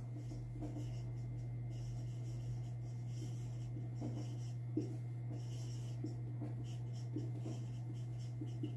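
Marker pen writing on a board in faint, short strokes, with a steady low hum underneath and one small tick near the middle.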